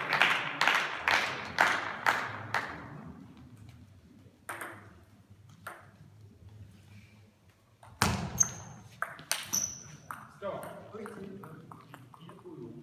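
Spectators clapping, about two claps a second, dying away by about three seconds in. Near the end comes a short table tennis rally: the ball clicks sharply off bats and table several times in quick succession.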